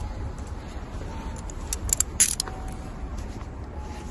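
Street background with a steady low rumble, and a quick cluster of sharp jingling clicks about two seconds in.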